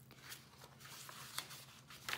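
Faint rustle of paper pages of a handmade junk journal being turned by hand, with a few light ticks, the clearest about one and a half seconds in.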